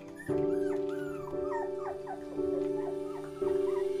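A puppy whimpering in a quick run of about a dozen short, high, arching whines. Background music with notes changing about once a second plays under it.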